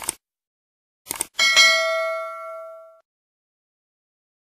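Sound effect of clicks, a single one and then a quick double click about a second in, followed by a bright bell ding that rings out and fades over about a second and a half. It is a subscribe-button click and notification-bell chime.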